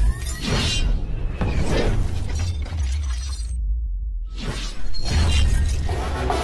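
Cinematic intro sound effects: shattering, glass-like hits and whooshes layered over dramatic music with a deep low rumble. There are sudden hits about half a second in, again near two seconds, and near the end, with a short dip in the highs just before the last one.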